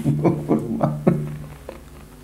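Music: a guitar plays about four plucked notes over a held low note, fading out about one and a half seconds in.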